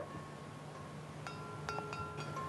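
Cowbells on hobbled pack horses clanking and ringing. Faint at first, then several fresh strikes about halfway through, each note ringing on.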